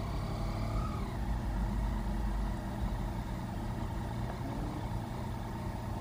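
Yamaha Tracer's three-cylinder engine running at low revs as the motorcycle rolls slowly along with a passenger aboard, the drone swelling slightly about a second in.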